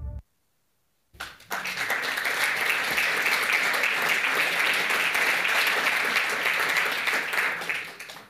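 Audience applauding in a lecture hall. It starts suddenly about a second in, after a brief silence, holds steady, and dies away near the end.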